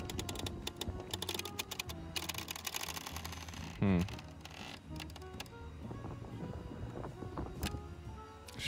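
Background music over a run of rapid clicks and rattles, dense for about the first three seconds, from handling the opened plastic fiber optic splice enclosure and its trays. A brief vocal sound about four seconds in.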